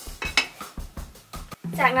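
Glass saucepan lid being set on a metal pot, clinking against the rim in a quick run of light knocks, one louder clink early in the run.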